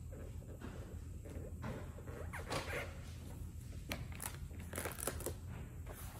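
Olfa utility knife blade drawn through a thin 0.02-inch PETG plastic sheet: a series of faint, scratchy cutting strokes, the clearer ones about two and a half and five seconds in.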